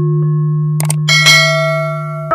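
Subscribe-button sound effects over a steady electronic drone: a short click about three-quarters of a second in, then a bright bell chime that starts about a second in and rings on, the notification-bell effect.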